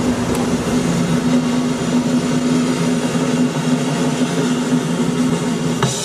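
A recorded drum roll played over loudspeakers: one long, sustained roll that cuts off abruptly near the end. It is the cue for the ribbon cut, which follows when it stops.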